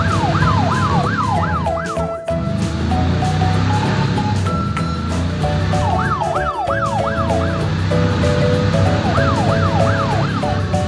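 Background music with a steady bass beat, joined three times by a fast yelping siren whose pitch sweeps up and down several times a second.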